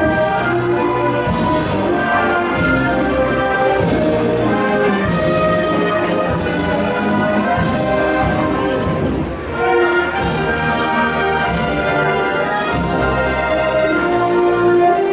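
A brass-and-woodwind marching band playing a procession march, with sustained brass chords and a brief dip in level just before ten seconds in.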